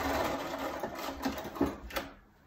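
Domestic sewing machine stitching a seam through pieced cotton quilt patches, running steadily.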